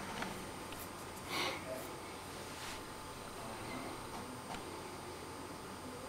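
Quiet room tone with a steady faint hiss and a thin high whine, a few faint clicks, and one short breathy noise about a second and a half in.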